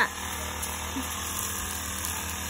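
Backpack brush cutter's small engine running steadily as it trims grass.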